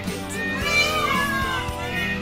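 An Indian peafowl (peacock) gives one loud call about halfway through, its pitch sliding downward, over a pop song with guitar.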